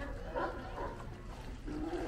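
California sea lions barking, a few short calls one after another.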